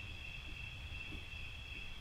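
Crickets trilling steadily, a faint continuous high-pitched chirr, over a low background rumble.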